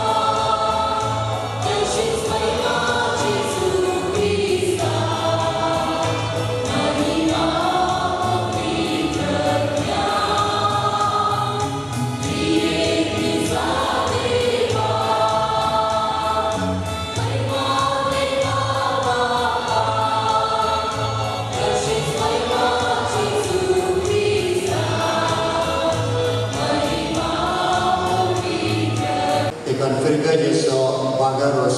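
Church choir singing a hymn in sustained phrases, with a steady low beat under the voices.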